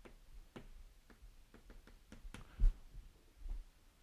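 Chalk tapping and scratching on a blackboard in a run of short, faint strokes, with one dull thump about two and a half seconds in.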